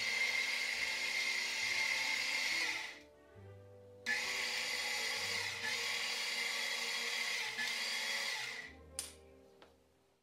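Harbor Freight 120-volt, 1500 lb AC electric floor winch running under remote control, winding its steel cable in: a steady motor whine for about three seconds, a one-second pause, then another run of about five seconds that stops near the end.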